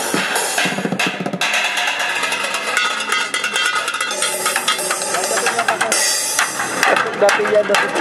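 Fast drumming with sticks on cooking pots, pans, lids, a plastic bucket and metal scrap laid on the ground, a dense run of metallic and plastic hits, playing along with an electronic dance backing beat from a small amplifier. The hits get louder and sharper towards the end.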